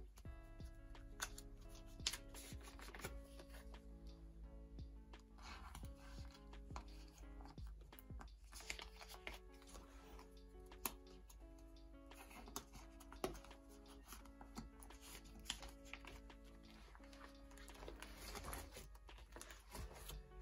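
Soft instrumental background music, its notes held and changing in steps, with light rustles and clicks of photocards and plastic binder sleeves being handled.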